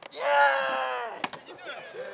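A long celebratory shout held for about a second, its pitch dropping slightly at the end, followed by a single sharp knock, likely the skateboard, and fainter voices.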